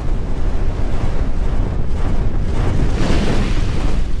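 Logo-intro sound effect: a loud, dense rumble with whooshing noise, swelling about three seconds in.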